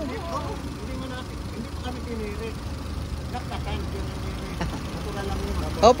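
Honda Accord engine idling steadily under the open hood.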